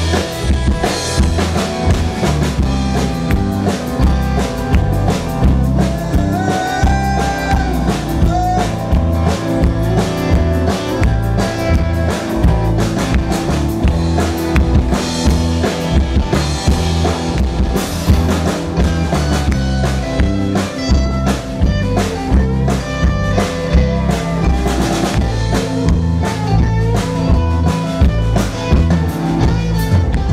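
Live country-rock band playing: a drum kit keeps a steady beat on bass drum and snare under strummed acoustic guitars, with a few sliding, gliding guitar notes over the top.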